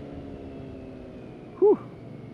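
BMW K1600GT's inline six-cylinder engine running under way, its note falling slowly as the revs drop.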